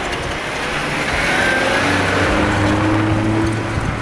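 Volkswagen sedan driving past on a slushy, snow-covered street: engine running with tyre noise through the slush, growing a little louder about a second in.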